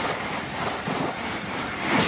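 Whooshing transition sound effect: a steady rushing noise that swells into another whoosh near the end.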